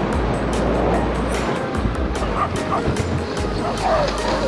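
Background music over a dog sled run: a steady hiss of the sled on the snow trail, with a few short yips from the sled dogs a little past halfway and near the end.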